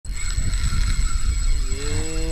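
Spinning reel being cranked against a hooked fish, a steady whirring, with wind buffeting the microphone.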